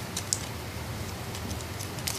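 Glossy plastic ribbon crinkling as fingers fold and weave the strands: a few faint light clicks and ticks, the clearest about a quarter of a second in and again near the end.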